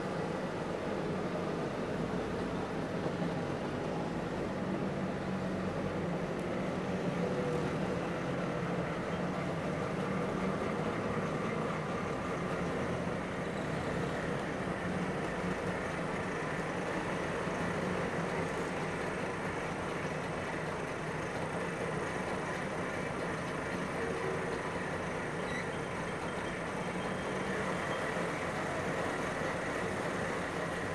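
A column of Trabant cars with two-stroke twin-cylinder engines running at low speed, a steady mixed engine noise as they file past.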